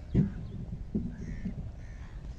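Crows cawing a few short times, faintly, after a short low-pitched burst just at the start.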